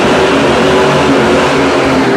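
Dodge Challenger's engine running loud and steady as the car drives slowly closer at low speed.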